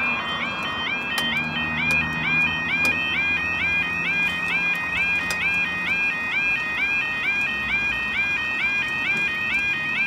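UK level crossing yodel alarm sounding while the barriers lower: a loud, rapidly repeating warble, about three cycles a second, that signals a train is due.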